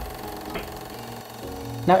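A steady mechanical whirring with a low hum, a sound effect laid under a film-style title transition, with a soft thump at the start. A man's voice comes in near the end.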